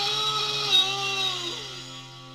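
Electric guitar holding a sustained note during a rock band rehearsal. The note slides down in pitch about one and a half seconds in and fades away, over a steady low tone.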